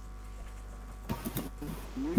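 A low steady background hum, then a few faint short clicks and knocks in the second half.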